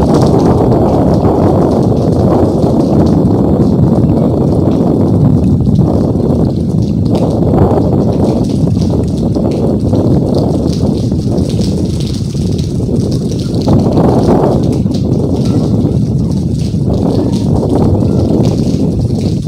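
Cyclone wind blowing hard in gusts, buffeting the phone's microphone as a loud, rough rumble that swells and eases, with rain falling.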